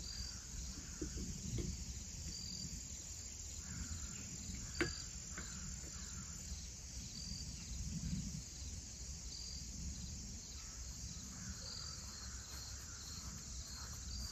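Insects chirping in a field: a steady high-pitched hum of insects with a short high chirp repeating about every two seconds. A single sharp click about five seconds in stands out above them.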